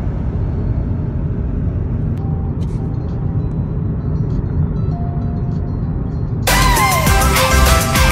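Steady low road rumble of a moving car. About two-thirds of the way through, background music cuts in suddenly and is the louder sound from then on.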